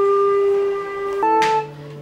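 Flute and recorder holding a long steady note that moves to a higher pitch a little past the middle, with a single hand-drum stroke just after.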